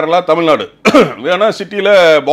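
A man speaking, with a brief pause a little under a second in.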